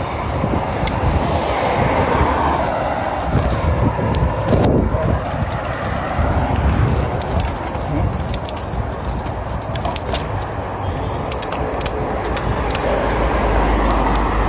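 Wind rushing over the microphone and bicycle tyres running on asphalt, a steady rumbling noise with road traffic in the background and a few sharp clicks scattered through it.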